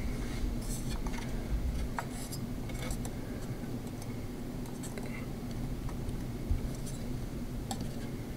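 Scattered light clicks and small knocks of a plastic CPU cooler fan being handled and fitted against the metal fins of a tower heatsink, over a low steady hum.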